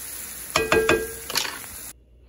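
Chopped onions and garlic sizzling in butter and oil in a cast iron skillet while a wooden spoon stirs them, with a few scraping knocks of the spoon against the pan in the middle. The sound cuts off suddenly near the end.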